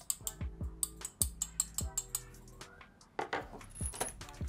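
Light metallic clicks and taps from a metal wall-mount bracket being handled and shown off, over background music with a steady beat.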